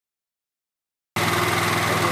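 Silence, then about a second in, an engine starts to be heard running steadily at idle.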